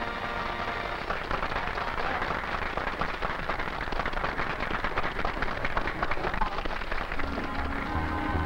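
Audience applauding: dense clapping that builds about a second in and dies away near the end, when the band starts playing again.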